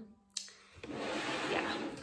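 A short click, then about a second of steady rustling from a cotton fabric hood being handled close to the microphone.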